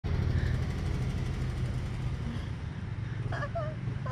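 A steady low mechanical rumble, like a motor running, with a faint voice briefly near the end.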